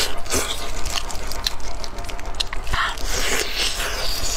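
Close-miked eating sounds: biting and pulling stewed meat off a large bone, with wet chewing and many short sharp clicks and smacks.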